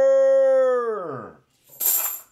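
A man's voice holding one long sung note, which slides down in pitch and fades out a little over a second in, followed by a short hiss near the end.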